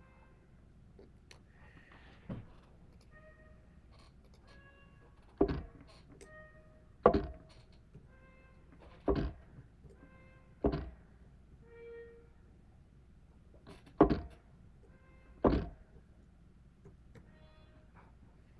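Laptop keys and mouse clicking during note entry in Sibelius notation software, with about six heavy key thumps. Between them, short pitched notes sound one after another as the software plays back each note as it is entered.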